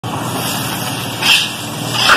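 A steady low mechanical hum, with a short scrape about a second in, in step with a metal ladle going into an aluminium pot of biryani rice.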